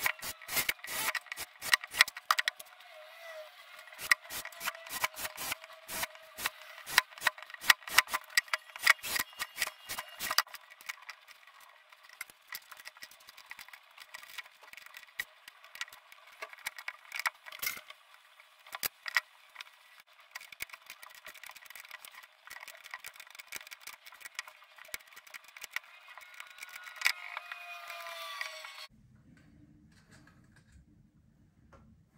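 Quick sharp clicks, taps and knocks of hard plastic as a PVC pipe frame is worked by hand: holes drilled along it and small plastic nozzles pressed in. The clicks come thick and fast for about the first ten seconds, then sparser, and the sound is thin with no bass.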